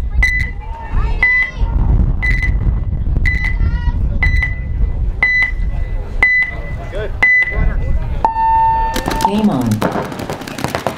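Paintball field's electronic start timer counting down: short high beeps about once a second, eight in all, then a longer, lower tone that signals the start of the point. A sudden rush of noise follows just before the end.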